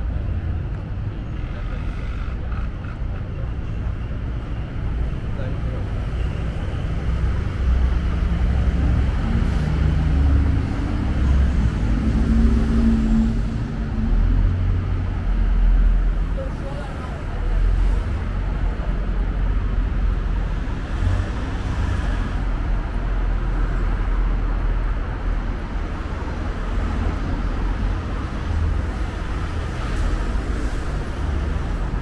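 City street traffic: the low rumble of passing cars, swelling in the middle as heavier vehicles go by, with a brief engine hum, over a steady street background.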